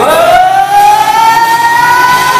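A woman singing live into a microphone, sliding up steeply into a long high note and holding it, still rising slightly.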